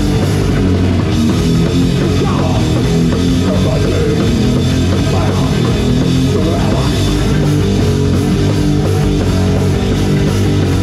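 Death metal band playing live: electric guitar, bass guitar and drum kit together, loud and continuous with heavy low end.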